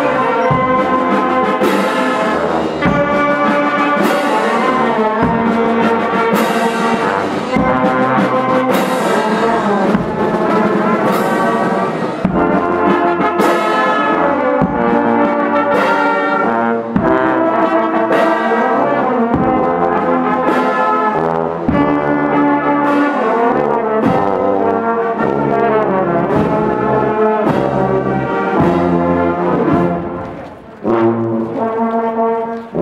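Marching wind band of saxophones, clarinets, trombones and sousaphone playing a slow march in the street, with a drum stroke about every second and a bit.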